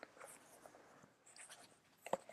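Faint rustling of paper pages with a few soft clicks as a book is leafed through to find a passage.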